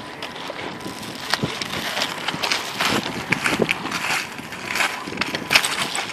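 Irregular crunches and clicks of people moving about on a gravel-covered flat roof, over steady outdoor background noise.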